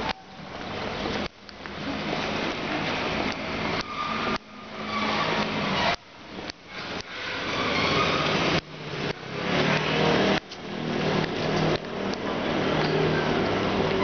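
Steady hiss of wet city street noise with road traffic. The level keeps falling away suddenly and building back up every second or two.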